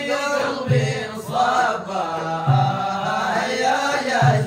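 Male voices chanting Sudanese madih, devotional praise of the Prophet, in long, wavering sung lines. A low pulse comes about every two seconds.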